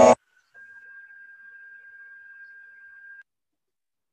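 A chanted Sanskrit verse cuts off just after the start, then a faint steady high tone at one pitch holds for under three seconds and stops abruptly.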